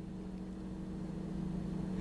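Steady low hum of a car's engine idling, heard from inside the cabin, growing slightly louder toward the end.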